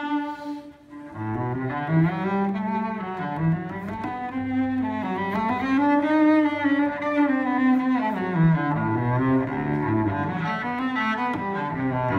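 Cello played with a bow, a flowing line of notes moving up and down in pitch. A long held note fades just after the start, there is a brief pause, and the playing picks up again about a second in.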